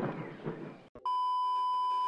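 The film soundtrack fades out, then about a second in a brief click gives way to a steady, unbroken test-tone beep of the kind played with colour bars.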